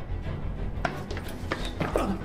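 Low, dark horror-film score carrying on as a steady drone, with a few short knocks in the second half.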